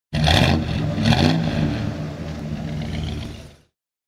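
Car engine revved twice in quick succession, about a second apart, then running on more evenly and fading out just before the end.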